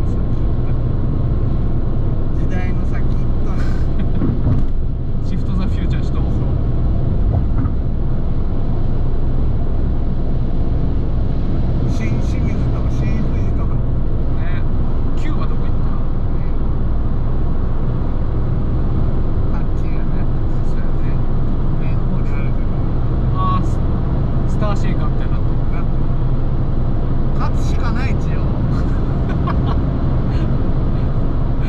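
Steady cabin noise of a Fiat 500 1.2 with manual gearbox cruising at expressway speed: the low drone of its small four-cylinder engine mixed with tyre and road noise, heard from inside the car.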